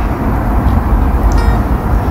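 Steady low rumble, with one short click about one and a half seconds in.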